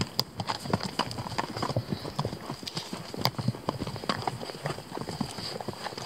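Hooves of a horse walking on a dirt track: an uneven, steady run of short knocks.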